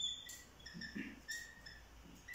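Dry-erase marker squeaking on a whiteboard while a word is written: a series of short, faint, high-pitched squeaks, one per pen stroke.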